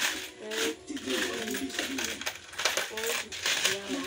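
Loose coins clinking and rattling as a hand stirs and sorts through a pile of them in a woven basket, a dense run of small metallic clicks.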